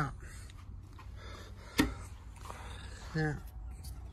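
Quiet steady low background with one sharp click just under two seconds in; a man says a single word near the end.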